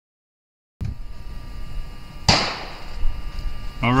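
Outdoor background with wind rumble on the microphone and a faint steady whine, starting just under a second in. About two seconds in comes a single sharp crack with a short ringing tail.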